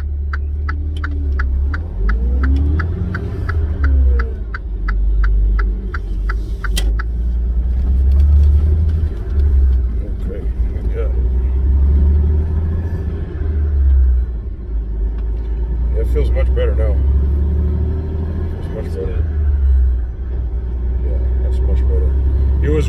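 Low, steady rumble of a semi-truck heard from inside the cab while driving. For the first seven seconds or so there is an even, fast ticking of about three clicks a second, and faint voices come and go.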